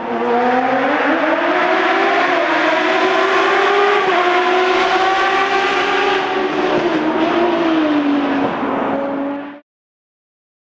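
An engine-like revving sound effect: one steady pitched note that climbs slowly for about four seconds, then eases back down, and cuts off shortly before the end.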